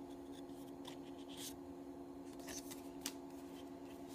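Faint rustling of paper photocards being handled and slid from the pile, with a few short rustles and one sharp click near the end. A steady low hum runs underneath.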